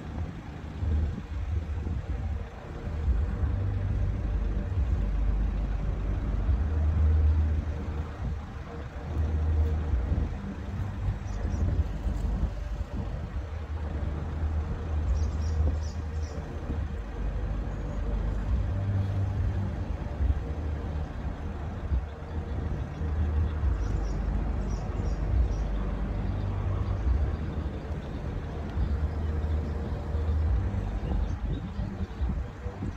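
Lifting machinery of a vertical-lift road bridge running steadily as the span rises, a low hum under a gusty rumble that swells and dips irregularly.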